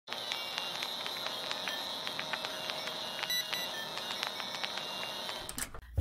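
Old-film crackle sound effect: a steady hiss with a faint high whine and irregular sharp clicks, cutting off about half a second before the end.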